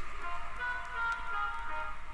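The closing seconds of an early-1990s techno record played from vinyl: quiet, held high synth tones ring on after the last vocal sample, with a few faint clicks.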